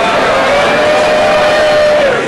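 A single voice holding one long, high, drawn-out note over crowd noise, its pitch sagging slightly and then dropping away as it ends.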